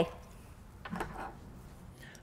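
Faint handling sounds in a quiet room as a small electronics kit board is put down on a tabletop, with a slightly louder soft knock about a second in.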